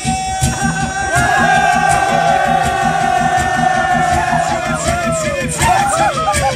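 Black Sea horon dance music with a steady, fast beat. Over it, a group of men's voices hold one long cry that sinks in pitch about five seconds in, followed by short shouts from the dancers.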